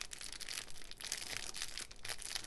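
Clear plastic wrapper crinkling as it is handled and turned in the fingers, a steady run of light crackles.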